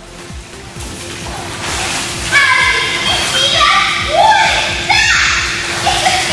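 Water sloshing around an inflatable kayak for about two seconds, then a child shouting excitedly, not in English, in an indoor pool hall.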